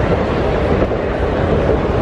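Steady, loud rumbling noise from a handheld camera being carried along, with the hubbub of a busy food court crowd beneath it.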